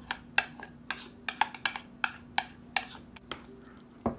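Metal spoon clinking against a white ceramic bowl as egg-yolk batter is scraped out into yogurt and stirred: a run of sharp, irregular clicks, roughly two or three a second.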